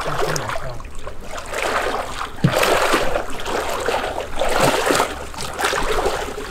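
Water splashing and swishing as a person wades through thigh-deep floodwater pushing a small boat by its bow, swelling in surges with his strides.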